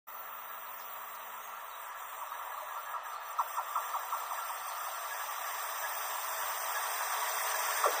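Express train behind an electric locomotive approaching along the rails: a steady rushing noise that grows louder as it nears, with a short run of light clicks about three and a half seconds in and again near the end.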